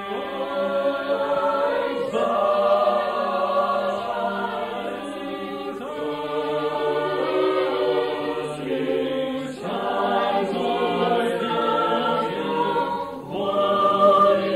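Madrigal choir singing in parts, sustained phrases with a short break between them every three to four seconds.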